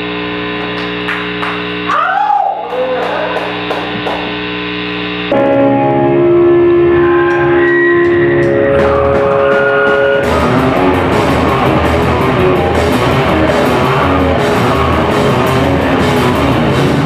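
Live hardcore band starting a song: electric guitar holding ringing, sustained notes, a louder held guitar part coming in about five seconds in, and the full band with drums and cymbals kicking in about ten seconds in.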